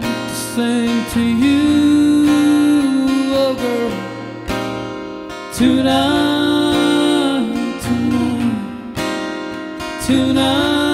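Solo country song: an acoustic-electric guitar strummed under a man's sung melody of long held notes that glide between pitches, easing off in the middle and rising again about halfway through.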